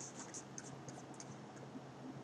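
Faint scratches and light ticks of a stylus on a tablet screen, bunched in the first second or so, over a low steady hum.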